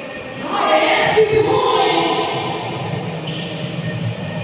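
Several voices calling out at once, overlapping held shouts that start about half a second in, echoing in a large gym hall.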